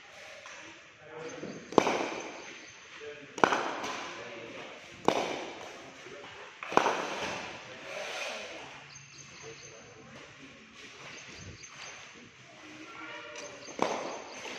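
Cricket bat knocking a leather cricket ball in a drop-and-knock drill: four sharp cracks about every 1.7 s, each ringing on in a large hall, then a quieter gap and another knock near the end.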